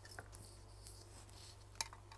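Faint handling of a small opened smartwatch and tools on a workbench: a few light taps and clicks, with one sharper click near the end, over a steady low hum.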